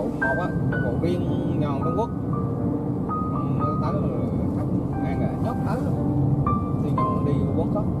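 Background music with a singing voice: a slow melody of held notes, some sung with vibrato.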